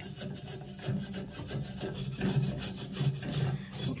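An abrasive pad scrubbed quickly back and forth along a copper pipe, cleaning up a freshly soldered joint, in a steady run of repeated rasping strokes.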